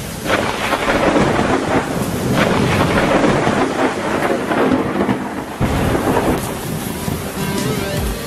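Rain-and-thunder recording: a steady downpour with rolling thunder rumbles swelling and fading throughout.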